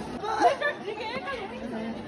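Chatter of several people talking at once, one voice loudest about half a second in.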